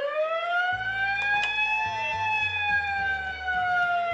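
Tonka toy fire engine's electronic siren sound effect: one slow wail that rises for about two seconds and then slowly falls. A low rumble joins underneath about a second in.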